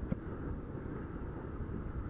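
Steady low rumble of a small single-cylinder Honda CG 150 motorcycle being ridden along a street, engine and road noise mixed with wind on the microphone.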